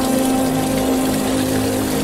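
Water poured from a plastic bottle splashing over hands, a steady rushing splash, with a held low music tone underneath.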